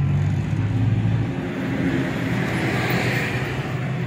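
Engine and road noise from inside a moving car overtaking a loaded lorry. The lorry's diesel engine runs loud and low alongside at first, then drops back as the car pulls past, while road and wind noise rise.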